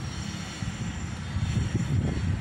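Wind buffeting a phone's microphone outdoors: an irregular low rumble that rises and falls.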